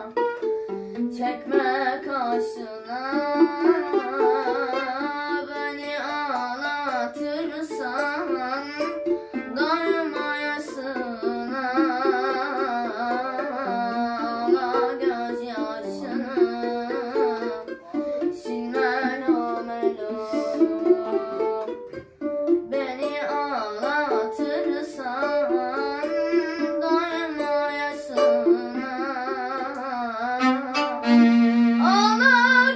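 Solo violin, bowed, playing a Turkish arabesk melody with sliding, wavering notes and heavy vibrato, briefly easing off about two-thirds of the way through.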